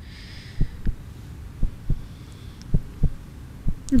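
Heartbeat suspense sound effect playing through a quiz show's thinking time: low thuds in pairs, about one pair a second, over a faint hum.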